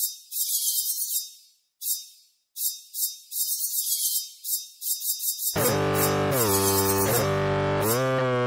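Background film music. For the first five and a half seconds only a thin, high ticking rhythm plays. Then a loud, sustained synthesizer-like part comes in, its notes sliding up and down.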